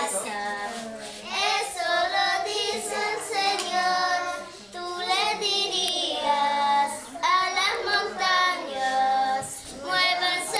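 Children singing a song.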